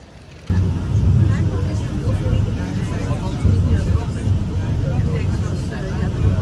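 Faint street background, then about half a second in a sudden change to a vehicle's steady low rumble with people's voices over it.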